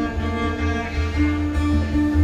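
Live string music: cello and violin playing long, held bowed notes over a steady low undertone.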